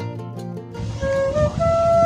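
Plucked acoustic-guitar background music stops suddenly under a second in, and a flute comes in playing long held notes over a low rumbling noise.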